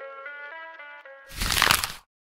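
The beat's last melodic notes ringing out and fading, then about a second and a half in a loud crackling burst of noise that cuts off suddenly.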